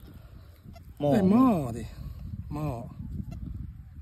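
A farm animal calling close by: one loud, drawn-out call that rises and falls in pitch about a second in, then a shorter call a little later.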